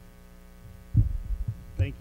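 Steady mains hum through the sound system, broken about a second in by a cluster of loud low thumps and another just before the end: handling bumps on the lectern microphone. A man starts speaking at the very end.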